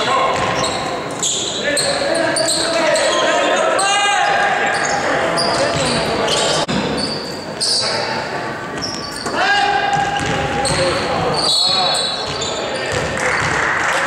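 Basketball game play in a large, echoing sports hall: the ball bouncing on the wooden court amid players' voices calling out.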